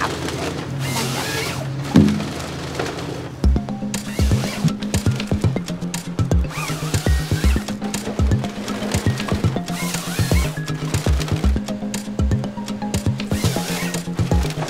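A forestry harvester's engine runs steadily, with one sharp knock at about two seconds. From about three and a half seconds on, background music with a steady beat takes over.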